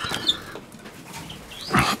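Faint chirps from small finches in an aviary flight, over a low background. A short rush of noise near the end.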